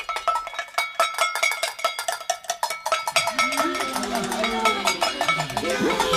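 Fast, dense clanging of metal pots beaten on iron kettles, each strike ringing, raising the alarm. About halfway through, voices calling out join in.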